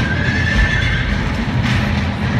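A horse neighing, one call about a second long at the start, over music with heavy low pounding.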